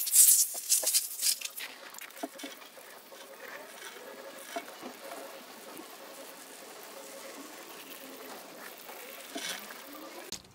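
Wet sounds from a soaked wool rug being cleaned by hand: a louder rush of noise in the first second or so, then a steady fizzing patter with small scattered ticks, like soapy water crackling in the pile.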